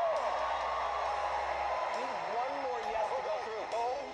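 TV studio audience cheering and applauding after a judge's yes vote, with voices calling out over it.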